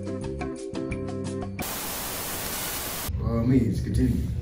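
Intro music with a regular beat, cut off after about a second and a half by an even burst of TV static hiss lasting about a second and a half. Then a man's voice starts up.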